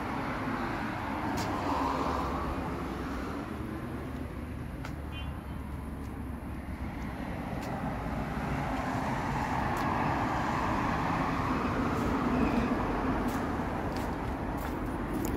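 Road traffic passing: a steady hum of vehicles that swells about two seconds in and again from about ten to twelve seconds in, with a few faint clicks.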